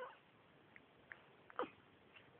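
A newborn baby making two brief, faint squeaky whimpers, one at the start and a louder one near the end that slides down in pitch.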